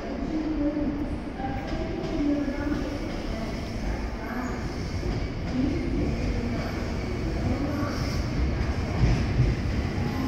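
A JR West 521-series electric train running past along the platform track, its wheels and running gear making a steady low rumble.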